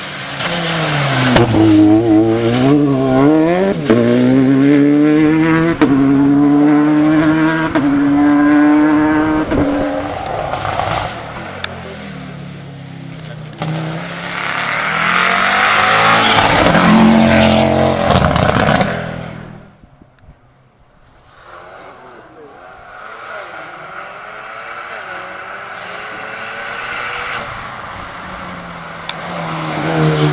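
Rally car engines driven hard, one car after another. First a Citroën DS3 rally car accelerates, its engine note climbing and dropping back at each gear change. Then a louder, noisier close pass by an Audi comes around the middle, followed by a more distant engine working up and down through the gears before an Alpine A110 arrives at the very end.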